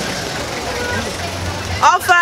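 Street ambience: a steady rush of traffic noise with faint distant voices, and a low vehicle engine hum in the second half. A loud voice calls out right at the end.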